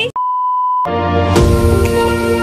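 A steady, high-pitched test-tone beep of the kind played with TV colour bars, lasting under a second and cutting off abruptly, followed by music.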